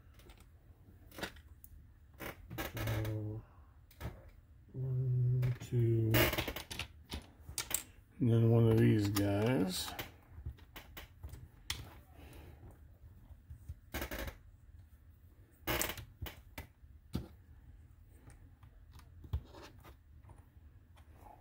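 Plastic Lego bricks clicking and clattering as they are picked from loose piles and pressed together, in scattered sharp clicks. A man's low wordless voice comes in three short stretches, about 3, 5 and 8 seconds in.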